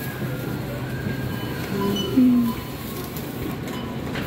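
Supermarket checkout ambience: a steady hum of store noise with faint background music, and a brief low voice-like sound about two seconds in.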